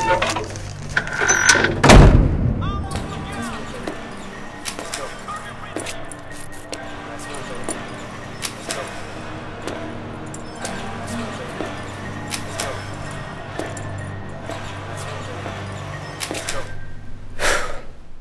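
Recorded album skit: a steady low ambient drone with a heavy thud about two seconds in, and a man's voice saying 'one last time, baby, here we go', leading into the song's beat.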